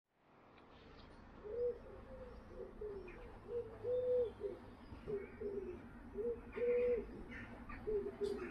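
A dove cooing over and over: a series of low, soft coos, mostly short, with a longer held coo about four seconds in and again near seven seconds. Faint chirps from smaller birds come in during the second half, over a low steady rumble.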